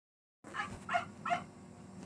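Three short animal calls in quick succession, over a faint steady hum.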